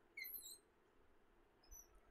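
Near silence: room tone, with a few faint, short high-pitched chirps about a quarter second in and again near the end.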